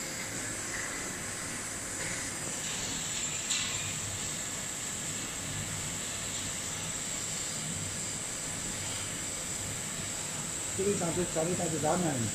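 FY800J heated-blade fabric slitter rewinder running steadily, a constant hiss with a faint high-pitched whine as it slits woven label tape onto rows of narrow rolls. A short click about three and a half seconds in.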